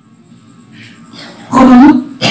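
A quiet pause, then about one and a half seconds in a short, loud vocal sound from a man's voice close to a handheld microphone.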